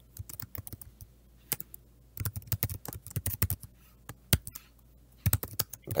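Typing on a computer keyboard: irregular runs of quick key clicks with brief pauses between them.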